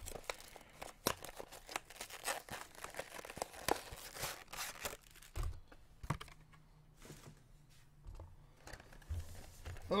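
Plastic wrapping being torn and crinkled by hand: a dense run of crackles for about five seconds, then quieter, with a few scattered knocks.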